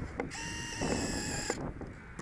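Start-up tones of an RC plane's electronic speed controller as the 4S flight battery is connected: a click, then about a second of steady electronic beeping that changes pitch partway through.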